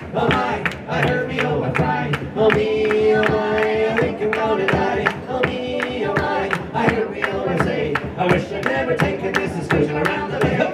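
Live folk band playing an instrumental break between verses: a bodhrán beats a steady rhythm, with hand claps, under held melody notes.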